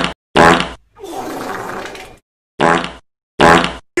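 Loud, distorted bursts of an edited meme sound effect, each chopped off sharply into silence: two at the start, a longer, quieter rasping sound in the middle, and two more near the end.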